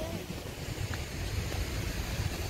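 Wind buffeting the phone's microphone, a steady low rumble, with a faint tick about a second in.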